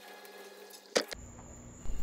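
Faint background hum with a single short, sharp click about a second in.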